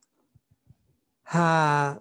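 A man's drawn-out 'haa', a single held hesitation sound with slightly falling pitch, lasting about two-thirds of a second and starting about a second in. It is preceded by a few faint soft clicks.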